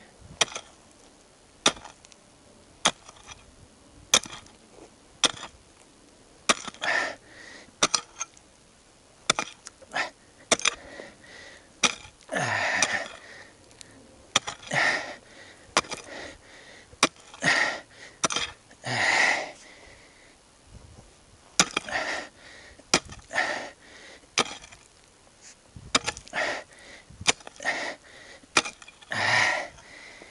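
Pickaxe striking hard, compacted soil: repeated sharp blows, roughly one a second, with longer scraping and crumbling sounds of loosened dirt between them.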